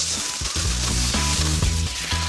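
Aluminium foil crinkling and rustling as a sheet is pulled from the roll and handled, over background music with steady low notes.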